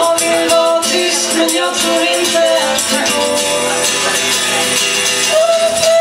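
Live acoustic song: a woman's voice singing a slow melody over strummed acoustic guitar, with a hand shaker ticking a steady rhythm.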